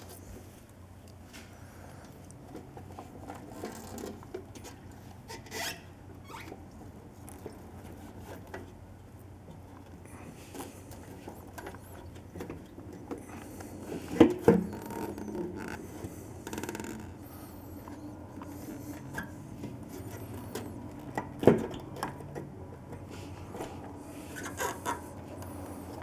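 Motorcycle fuel tank being set back onto the frame by hand and shifted to seat its locators over the rubber bumpers: quiet scraping and rubbing, with a couple of sharp knocks a little past halfway and another later on.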